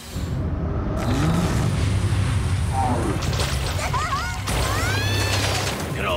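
Cartoon sound effect of a deep, steady rumble that starts suddenly with a boom. High-pitched cartoon voices cry out over it in the second half.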